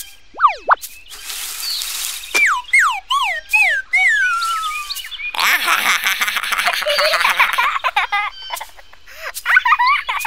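Cartoon sound effects: two quick falling whistles, a hissing rush, then a string of about five falling pitch glides one after another. A longer fizzing wash follows, and high, wavering squeaks come near the end.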